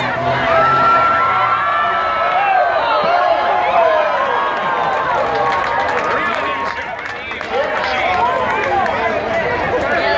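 Grandstand crowd cheering and chattering, many voices overlapping, with a long held call about a second in.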